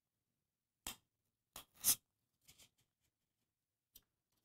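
Bamboo skewer being pushed through a cut corrugated-cardboard disc: a few brief, faint handling sounds over the first three seconds, the loudest about two seconds in.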